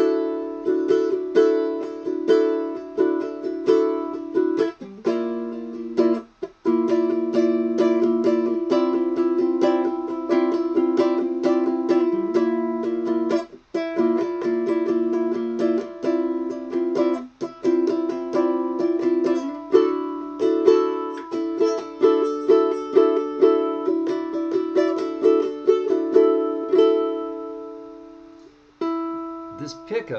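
Striped myrtle Mya Moe tenor ukulele with a wound low G, played through its K&K Twin Spot pickup into a 1971 Fender Vibro Champ tube amp: fast strummed and picked chords with brief breaks, ending on a chord that rings out and fades near the end.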